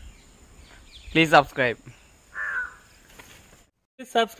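Crow cawing: two loud harsh caws a little over a second in, then a fainter third caw.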